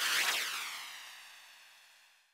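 A shimmering whoosh sound effect from video editing, swelling in quickly and fading away over about two seconds, as a caption animates onto the screen.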